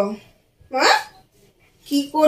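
A woman's short vocal sounds without clear words: a falling one at the start and a quick rising one about a second in, then speech begins near the end.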